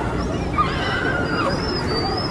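Riders on a giant swinging pendulum ride screaming: several high-pitched cries that rise and fall, the highest about a second and a half in, over a steady low rumble of noise.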